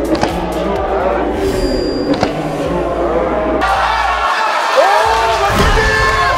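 Background music with shouting voices over it, and a few sharp knocks. The sound changes abruptly a little past halfway, as at an edit.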